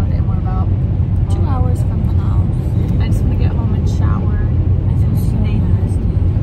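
Steady low road and tyre rumble inside the cabin of a moving electric car, with quiet talking over it.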